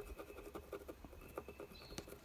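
Faint, irregular little scratches and taps of a pencil marking a point on rough-sawn wood.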